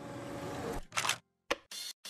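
Glitchy electronic sound effects for an animated logo: a hiss of static, then from about a second in a stutter of short noise bursts that cut in and out abruptly.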